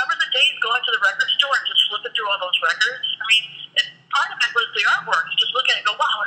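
Only speech: people talking over a telephone line, the voices thin and narrow-sounding.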